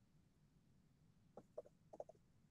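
Near silence, with a few faint keyboard keystrokes in the second half.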